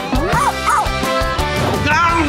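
Cartoon monkey-truck characters making chattering, monkey-like calls that swoop up and down in pitch, over bright background music.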